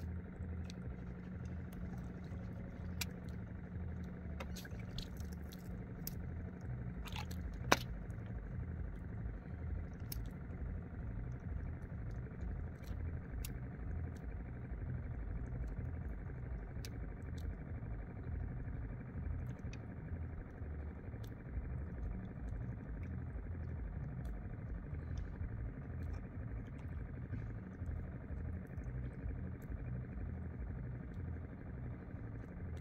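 Steady low rumble with scattered light clicks and knocks around a small wooden outrigger boat at sea, and one sharper click about eight seconds in.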